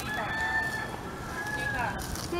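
A rooster crowing: two drawn-out notes, the second falling away at its end.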